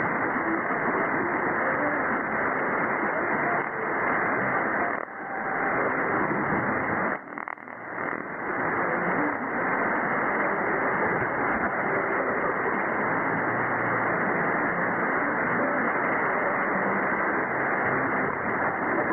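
Shortwave receiver audio on 4774.98 kHz in lower sideband through a narrow filter: a steady, muffled wash of static with a weak, unidentified station barely above the noise. The signal fades down briefly about 5 seconds in and again around 7 to 8 seconds in.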